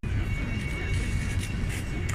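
City street traffic: a steady low rumble of road vehicles with a faint, steady high-pitched whine above it.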